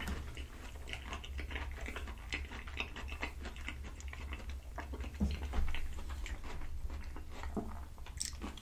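Close-miked chewing of creamy penne pasta with shrimp: a steady stream of soft, wet mouth clicks and smacks at an irregular pace.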